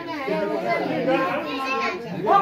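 Several voices overlapping at once in a crowded room, people talking and calling out over one another.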